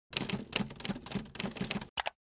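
Typewriter keys clacking in a rapid, uneven run of strikes that stops suddenly near the end, a typing sound effect laid under on-screen text.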